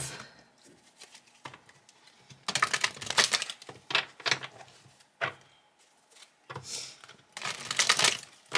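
A deck of tarot cards being shuffled by hand: several bursts of rapid card flicking, starting about two and a half seconds in, with a pause near the middle.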